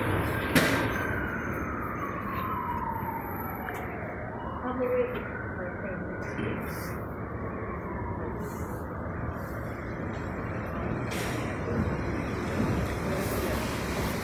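A siren wailing: one slow fall in pitch, then a rise and a fall, over a steady low rumble, with a sharp click just before it starts.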